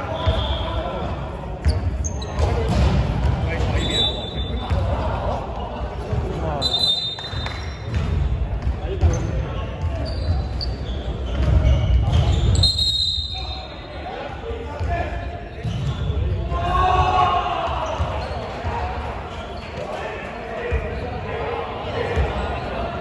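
A basketball bouncing on a hardwood court, mixed with players' voices, echoing in a large sports hall, with a few short high-pitched squeaks.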